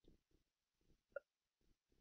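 Near silence, with one short faint blip a little over a second in.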